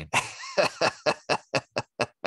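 A man laughing: a run of short, breathy bursts, about four a second, growing shorter and fainter toward the end.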